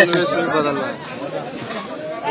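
Speech: a man talking, with other voices chattering around him.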